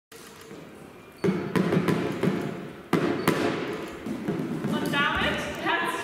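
Drumsticks striking a large exercise ball, a few hard thuds echoing in a sports hall, the two loudest about a second in and about three seconds in, followed by voices near the end.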